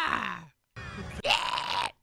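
Vocal sounds from a toy commercial's soundtrack: a voice trailing off, a brief dropout at an edit cut, then a loud harsh vocal burst from about a second and a quarter in that cuts off suddenly.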